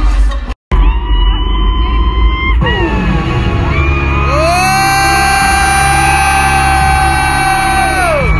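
Loud live concert music over an arena PA, recorded on a phone. After a brief cut to silence under a second in, heavy bass sits under long held synth-like tones. One tone slides down in pitch near three seconds, and another rises in about four seconds in and is held.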